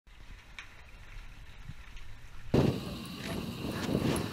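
A faint muffled underwater rumble with a few soft clicks. About two and a half seconds in it switches suddenly to louder outdoor sound: wind buffeting the microphone.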